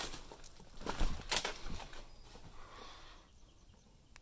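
Footsteps and rustling as someone walks over a debris-strewn barn floor, with a few sharp knocks and scrapes, loudest about a second in.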